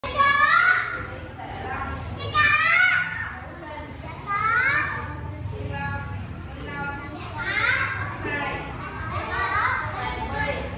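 A roomful of young children chattering, with high, loud calls that rise in pitch breaking out about every two seconds.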